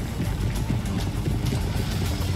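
Documentary background score carrying on under a gap in the narration: a low, steady rumble with faint held low notes.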